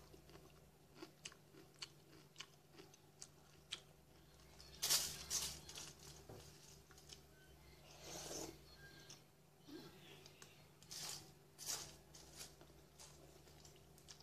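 Close-up chewing and crunching of cereal with granola clusters in milk: a run of sharp crunches, with louder bursts of crunching about five, eight and eleven seconds in as fresh spoonfuls go in.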